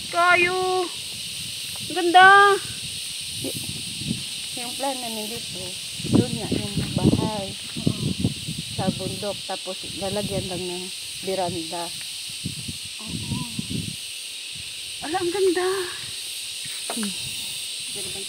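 Steady high-pitched buzz of insects, with voices talking now and then and a few short, high-pitched calls, the loudest near the start and about two seconds in.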